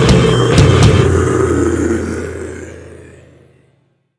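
Death metal song ending: a last hit from the full band, then the distorted chord rings out and fades away to silence over a couple of seconds.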